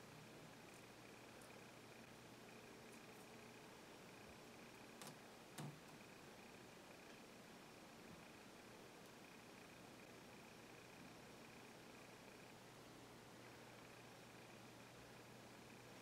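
Near silence: faint room hiss with a faint high steady tone that stops about three-quarters of the way through, and two soft clicks about five seconds in.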